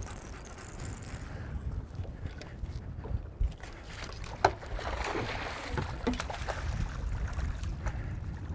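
Wind rumbling on the microphone over open water from a fishing boat, with a few sharp clicks and a short rush of noise a little past halfway.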